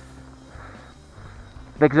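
Faint, even background noise in a pause of speech, then a man begins speaking near the end.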